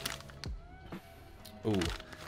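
Plastic-bagged accessory packaging being handled: a few soft clicks and rustles about half a second apart. Near the end comes a drawn-out, falling 'ooh' from a man.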